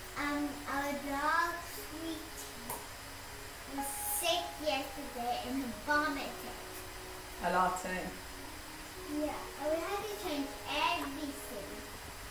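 A young girl's high-pitched voice in short bursts, talking and partly singing, away from the microphone.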